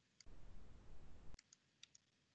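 Faint computer mouse clicks: one near the start, then four or five in quick succession in the second half.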